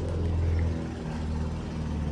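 Petrol lawnmower engine running steadily with a low hum.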